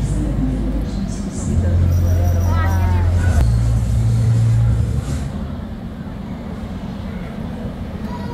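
Car engine sound effect from a 4D show's soundtrack, played over cinema speakers: a low, steady engine rumble for about three seconds that drops away about five seconds in, leaving a quieter hum with voices.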